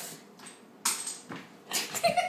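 Three short breathy bursts of stifled laughter, about half a second apart.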